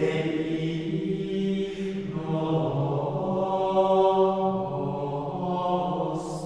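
Gregorian chant sung in unison by a choir of men's voices, in slow, long-held notes that move gently from pitch to pitch.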